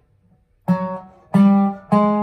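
Dobro (square-neck resonator guitar) played lap-style with a slide bar: after a brief silence, three low plucked notes about two-thirds of a second apart, each ringing out, the last sustaining.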